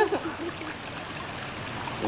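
Steady rush of flowing water, even and unbroken.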